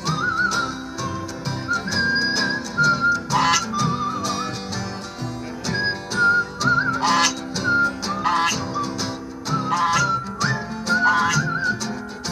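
Acoustic country-style jam: strummed acoustic guitars under a high, wavering lead melody with vibrato, interrupted several times by short, bright bursts.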